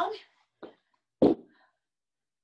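Hand weights being set down on the floor: a faint knock about half a second in, then a louder single thud a little after one second.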